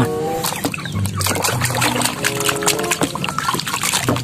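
Water sloshing and splashing in a plastic basin as a muddy plastic toy is dunked and rubbed clean by hand, over background music.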